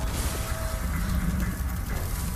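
Animated fire sound effect: a steady rush of crackling noise over a low rumble.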